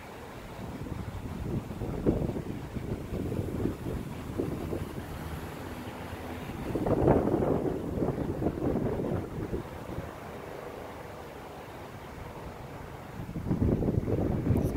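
Wind buffeting the microphone in gusts: an uneven low rumble that swells about two seconds in, is strongest about seven seconds in, and picks up again near the end.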